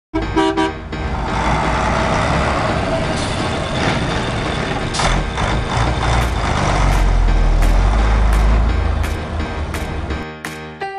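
A vehicle horn toots twice briefly, then a truck engine runs steadily, its low rumble swelling about seven seconds in and easing near the end. Light clicks sound now and then over it.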